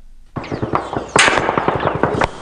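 Automatic gunfire: a rapid, irregular run of sharp cracks that starts a moment in and grows heavier from about halfway.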